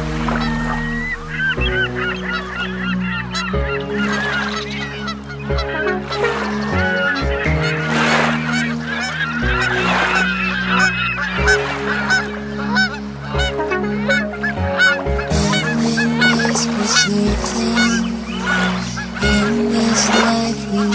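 Many short waterfowl calls, each a quick rise and fall in pitch, over background music with sustained chords that change every couple of seconds.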